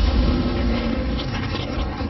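Logo-intro sound effect: a deep rumble with a hiss over it, slowly fading after a boom.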